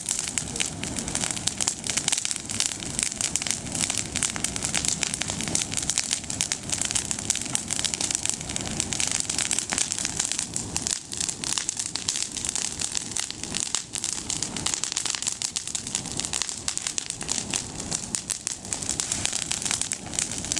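A bonfire of freshly pruned olive branches burning, crackling and snapping continuously with many sharp pops a second.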